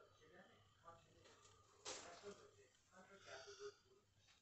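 Faint whispering close to the microphone, with a short hiss about two seconds in.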